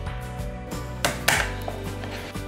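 Background music, with one short plastic click and rattle about a second in as a DVD is pressed onto the spindle hub in the open tray of a slim portable DVD drive.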